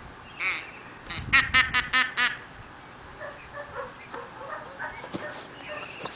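A duck quacking: one quack, then a rapid run of about six loud quacks a second or so in, followed by fainter sounds.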